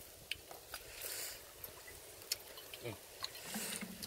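Faint, scattered ticks and crackles with a short soft hiss about a second in, from whole fish grilling on a wire rack over a charcoal clay stove.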